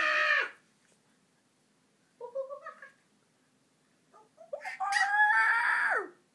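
Baby's high-pitched vocal squeals: a brief one at the start, a short one about two seconds in, and a long drawn-out "ahhh" near the end.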